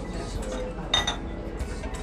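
A single sharp clink of tableware about a second in, ringing briefly, over steady background music.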